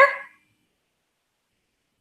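The tail end of a woman's spoken word in the first moment, then dead silence for the rest.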